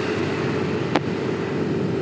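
Steady riding noise from a moving motorcycle: a constant hum with wind and road noise, and one short sharp click about a second in.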